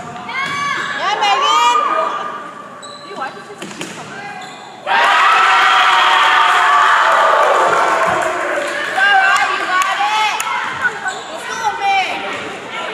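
Volleyball rally: sharp ball contacts on a hard gym court and players calling out. About five seconds in, sudden loud cheering and shouting starts as the point is won and lasts about three and a half seconds, followed by more shouts.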